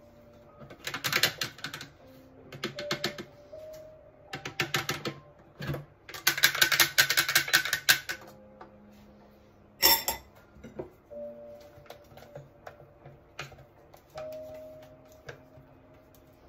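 Bursts of rapid clicking and scraping as the butterfly whisk attachment is taken out of a stainless-steel Thermomix mixing bowl and worked with a spatula over thick batter, with one sharp knock about ten seconds in. Soft background music with held notes plays underneath.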